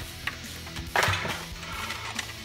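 Cardboard toy packaging being handled and pushed aside on a table, a short rustle-and-knock about a second in, over quiet background music.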